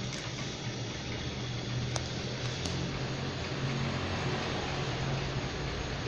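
Electric fan running with a steady whir and a low hum, with one faint click about two seconds in.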